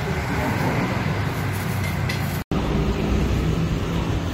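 City street traffic noise, a steady rumble of passing vehicles, with indistinct voices. It drops out for a moment about halfway through.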